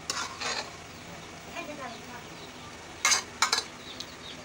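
A spoon stirring and scraping in a pot of Malabar-spinach and lentil dal, in short strokes: two early on and a louder quick run of three about three seconds in, over a steady low hiss of the cooking.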